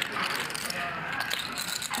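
Poker chips clicking against each other as a player handles his chip stack, a rapid run of small clicks.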